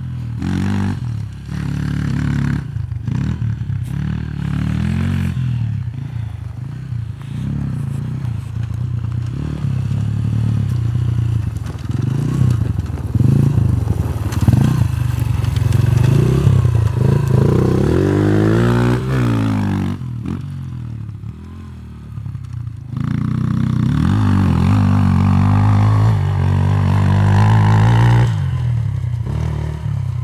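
Derbi Senda 125 four-stroke enduro motorcycle with a LeoVince exhaust, revving up and down as it climbs a gentle dirt slope. About two-thirds of the way through it passes close with a falling pitch, goes quieter briefly, then revs hard again.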